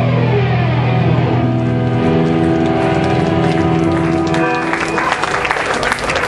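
Distorted electric guitars of a hardcore band ringing out on a held chord, with a note sliding down in pitch in the first second or so. The chord stops about four and a half seconds in and the crowd begins clapping.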